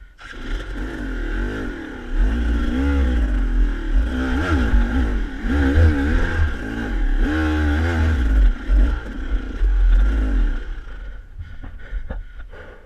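SmartCarb-carbureted KTM dirt bike engine revving up and down over and over as the bike is worked along rocky single track, with scraping and clattering; the revs ease off near the end.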